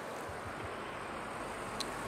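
Steady outdoor background noise in an open parking lot: an even, faint rush with no distinct events.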